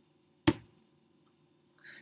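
A single sharp computer-mouse click about half a second in, advancing the presentation to its next slide.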